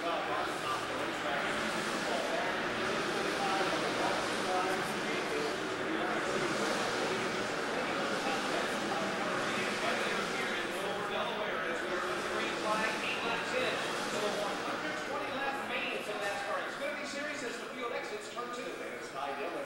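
Indistinct chatter of many people talking at once inside a large enclosed room, steady throughout.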